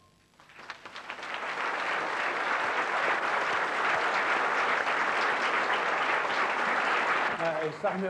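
Studio audience applauding, swelling in over the first second and then holding steady, with a man starting to speak near the end.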